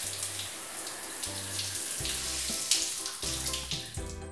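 Shower running, a steady hiss of spraying water.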